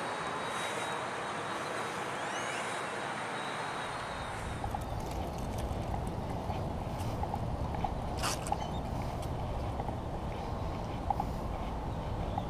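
Steady outdoor background noise, with a deeper rumble joining about four seconds in.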